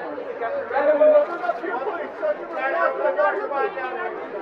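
Several voices talking over one another: photographers calling out and chattering at a red-carpet photo line.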